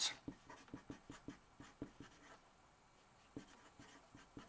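Black felt-tip marker writing on paper: a quick run of short strokes, with a brief pause a little past the middle.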